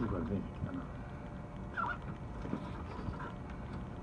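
Faint, scattered voices of people inside a stopped train car, over a low steady rumble.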